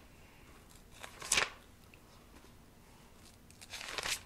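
Thin Bible pages being turned by hand: two brief papery swishes, the louder about a second in and another near the end.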